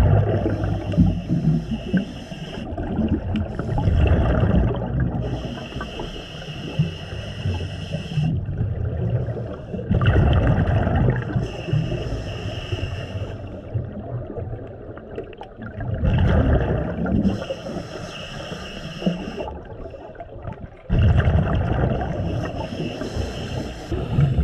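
Scuba diver breathing through a regulator underwater: hissing inhalations alternating with the low rumble of exhaled bubbles, in slow repeated breaths.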